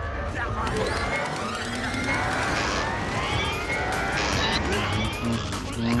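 Cartoon Tasmanian Devil vocalizing wildly, a frantic growling, yelling outburst with repeated rising whistling glides, over background music.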